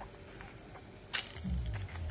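Steady high-pitched insect chorus, typical of crickets. A light click comes about a second in, and a low rumble starts near the end.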